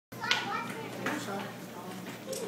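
A young child's high-pitched voice calling out in short bursts, loudest just after the start and again about a second in.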